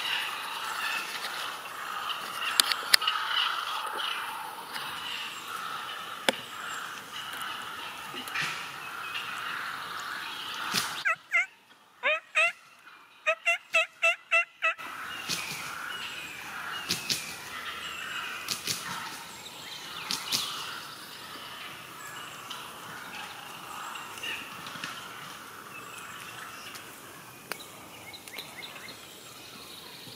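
Wild turkey gobbling: rapid, rattling bursts around the middle, in two runs over a few seconds. A few sharp ticks are scattered through the rest.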